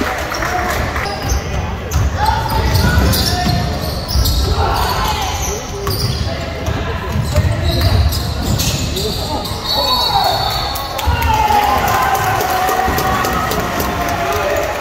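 Basketball bouncing on a hardwood gym floor during play, a string of sharp knocks, with players and spectators calling out in the echoing gym.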